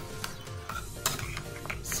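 Steel spoon stirring and scraping thick ground sweet-corn paste in a stainless-steel mixer-grinder jar, with several light clinks against the jar, over background music.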